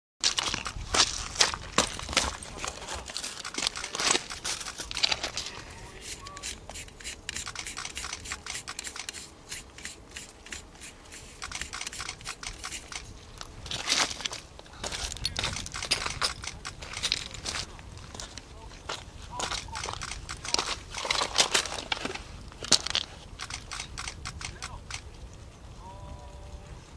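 Irregular sharp clicks and crackling, bunched in several flurries, with indistinct voices of people close by.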